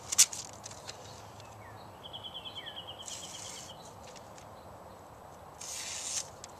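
Spyderco Paramilitary 2's S30V blade slicing through phone book paper in short rustling cuts, one about three seconds in and another near the end. The edge is still cutting paper cleanly after hard use. A sharp click comes just after the start, and a bird trills faintly about two seconds in.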